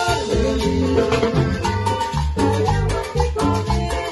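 Live tropical band music in a quick, danceable rhythm, with accordion, electric guitar and bass over a repeating bass line and a metal güira scraping the beat. The passage is instrumental.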